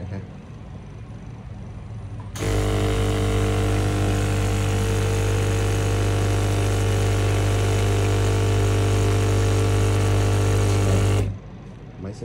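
Electric air pump of a breath-alcohol simulator running as a loud, steady hum that switches on about two seconds in and cuts off abruptly near the end. It is pushing alcohol-laden air through the tube into the breathalyzer as a test sample.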